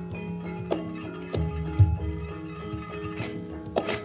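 Javanese gamelan playing through a line-array PA, with sustained metallophone and gong tones, low kendang drum strokes and a few sharp knocks, the loudest near the end.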